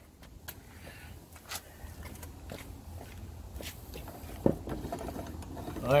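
Steering sector gear and pinion of a Toro LX425 lawn tractor being worked through by the steering, with scattered light clicks and a sharper knock about four and a half seconds in, over a faint low rumble. The steering turns more freely now that the pinion nut has been backed off from too tight.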